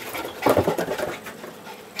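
A Labradoodle in rough play, breathing hard with one loud, short vocal burst about half a second in.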